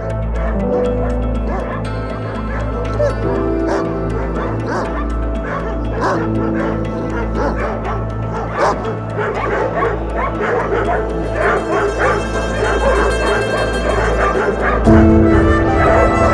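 Several dogs barking and yelping over a music score of held notes, with the barking densest in the middle. The music moves to a new chord near the end.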